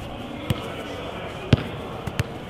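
Two sharp thuds of a football being touched by a player's foot while dribbling, about a second apart, the second louder.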